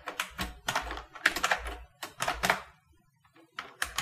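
Typing on a computer keyboard: a run of irregular key clicks, a pause of about a second, then a few more keystrokes near the end.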